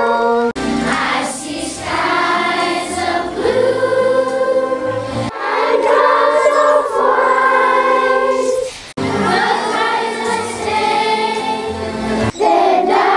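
A group of children singing together in chorus. The singing breaks off abruptly about half a second in, about five seconds in and about nine seconds in, where one recording is cut to the next.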